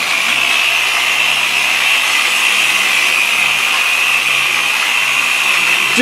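Handheld electric polisher running steadily with a soft foam pad on car paint, spreading a silica-based nano glass coating: a steady whine over a low hum.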